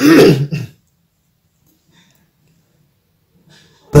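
A person clears their throat once, a short rough burst of well under a second right at the start.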